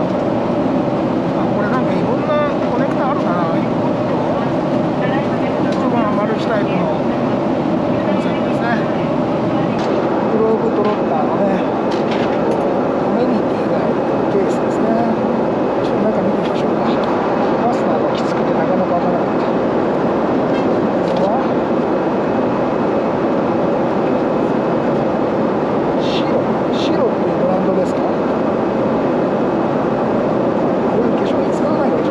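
Steady airliner cabin noise inside a Boeing 777-300ER, with indistinct background voices and a couple of light clicks near the end.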